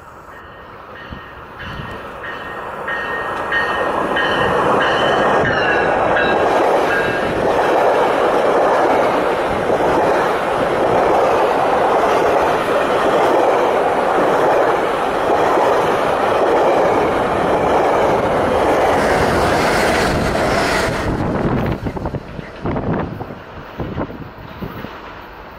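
GO Transit bilevel commuter train passing close by at speed. It builds over the first few seconds into a loud, steady rush of wheels and coaches lasting about fifteen seconds, then drops off sharply near the end as the last car goes by. A high, steady tone sounds over the approach in the first several seconds.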